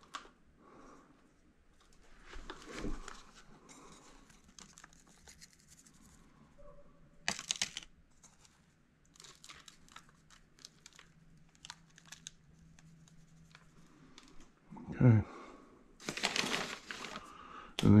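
Faint rustling, crinkling and light clicks of hands working potting soil in a fibre pot and handling plastic seed trays, with a sharper rustle about seven seconds in and a louder one near the end.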